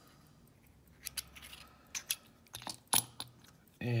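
Small metal lock parts being handled: several sharp, separate clicks and taps as a metal follower housing is set down on the bench and a brass lock core and wooden dowel follower are picked up, the loudest click near the end.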